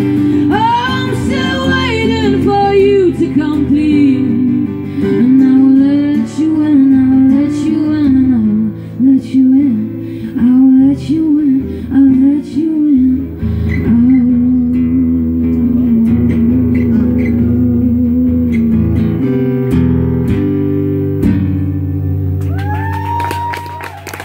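A woman singing wordless, sliding vocal runs over a strummed acoustic guitar. Her runs settle into a long held note, and the song closes on its final guitar chords shortly before the end. An audience cheer begins right at the end.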